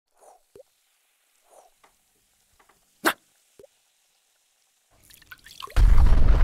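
Cartoon sound effects: a few soft drips and plops with one sharp click about three seconds in. Then a fizzing build-up and a loud, low cartoon explosion near the end.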